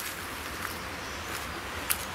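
Steady outdoor background noise in a wooded river valley, with a single sharp click, such as a footstep on a stone step, a little before the end.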